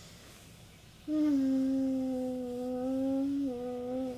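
A voice humming one long, steady note that starts about a second in and dips slightly in pitch near the end.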